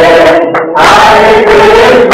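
Many voices chanting together in unison, a devotional group chant. It breaks off briefly about half a second in.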